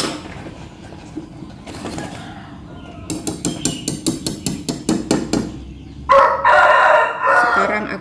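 A rooster crowing once, loud and long, about six seconds in, preceded by a quick run of sharp clicks at about five a second.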